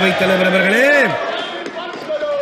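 A man speaking, his voice dropping away a little past the first second into a quieter pause with a few short knocks.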